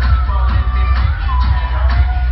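Dance music from a DJ set played loud over a club sound system, with heavy bass and a steady beat about twice a second under a gliding melodic line.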